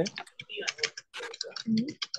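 Typing on a computer keyboard: a quick run of keystroke clicks, with a short vocal murmur near the end.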